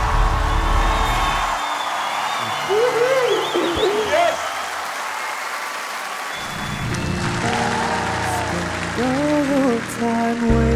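Studio audience applauding and cheering, with a few rising whoops a few seconds in. About six and a half seconds in, the clapping gives way to a slow, soft ballad as a new song starts, with a man's singing voice near the end.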